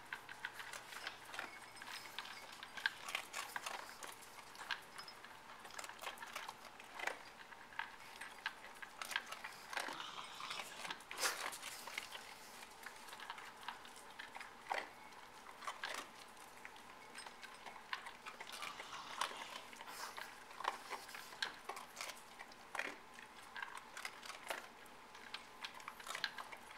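Two dogs eating from bowls: a continuous run of irregular crunching chews and sharp clicks.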